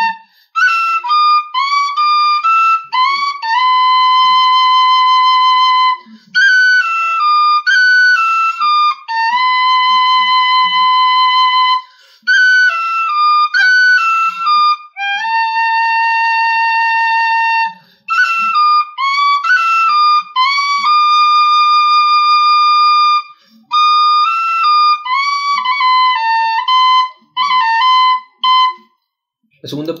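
Metal tin whistle playing a lively tune in phrases of about six seconds separated by short breaths, with quick cuts flicking above the main notes. The playing stops about a second before the end.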